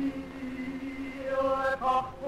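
Jewish cantorial liturgical singing: a low note held steadily, joined a little past halfway by a higher sung note that breaks off briefly near the end.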